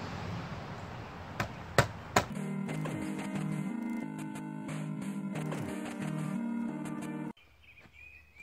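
Three sharp knocks of a rubber mallet striking the tonneau cover's frame to tap the channel loose, about a second and a half to two seconds in. Then background music with a steady beat takes over and cuts off abruptly near the end.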